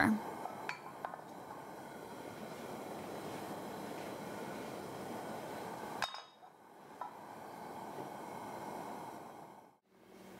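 A steady soft hiss from a gas burner heating olive oil in a stainless steel skillet, with a few faint clinks. The hiss cuts out briefly about six seconds in, then resumes.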